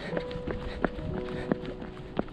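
Footfalls of someone running, landing at an even pace, with background music of long held notes.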